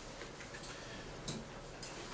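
A few faint, sharp ticks over quiet room tone.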